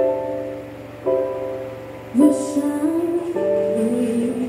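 Slow piano introduction: chords struck about once a second, each dying away, with a wordless sung line gliding upward over them from about halfway.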